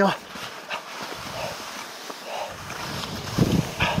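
Skis scraping and bumping over soft spring moguls, with the skier's breathing, and a cluster of louder low thumps near the end.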